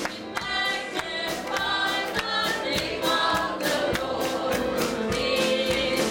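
Church praise team, mostly women's voices, singing a gospel praise song into microphones, with a steady beat running under the voices.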